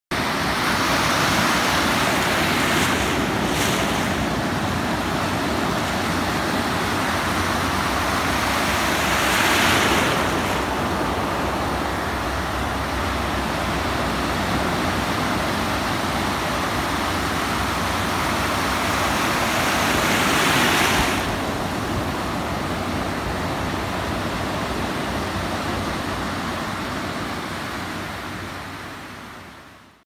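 Ocean surf washing in over a beach, a steady rush with louder waves breaking about ten seconds in and again around twenty-one seconds, fading out near the end.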